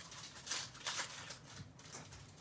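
Trading cards being handled between pulls, with a few faint, short rustles and slides of card stock.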